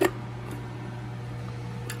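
A few light clicks of metal parts as a new inner tie rod is handled at a bench vise: a sharp one at the start, a faint one about half a second in and another near the end. A steady low hum runs underneath.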